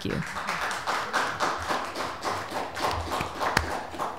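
Audience applauding, a dense patter of many hands clapping at once.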